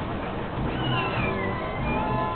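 Carousel music playing, with a high, wavering squeal sliding downward in pitch about a second in.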